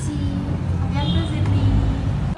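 A girl speaking French, saying goodbye and thanks ('À bientôt Dela, merci'), over a steady low background rumble.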